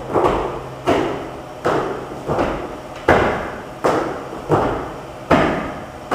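Burpees done at full speed: hands and chest slapping onto a gym floor, feet landing and overhead hand claps. They make about eight sharp impacts a little under a second apart, each echoing briefly in a large room.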